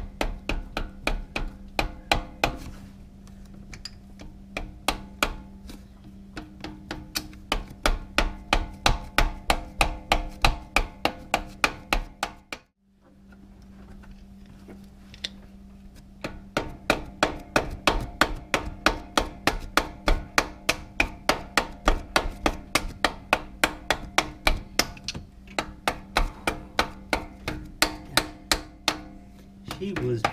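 Steady, even hammer taps on metal, about three a second, each with a short ring, pausing for a few seconds near the middle: a camshaft timing sprocket with a double-roller timing chain being tapped home on a Dodge 318 V8.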